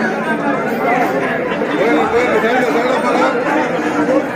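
A large crowd of devotees, many voices talking and calling at once in a steady, loud hubbub.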